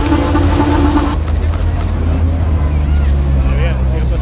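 Engines of cars and a bus running slowly in jammed street traffic, a steady low drone, with crowd voices in the background.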